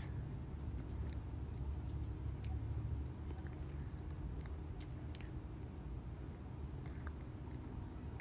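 Quiet room with a steady low hum and a faint steady high tone. A few faint, light clicks come from hands handling a painted glass jar and paintbrush.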